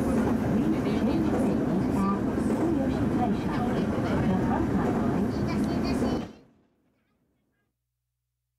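Rumble of a moving train heard from inside a passenger car, with people's voices mixed in; it fades out quickly about six seconds in.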